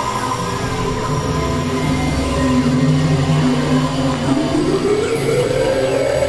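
Experimental electronic drone music: several held synthesizer tones layered over a low rumble, sounding rather like a train. About four seconds in, a tone slides upward in pitch.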